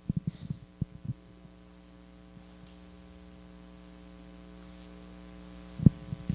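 Steady electrical mains hum from a handheld microphone and sound system, with a few soft low handling thumps in the first second or so and another near the end.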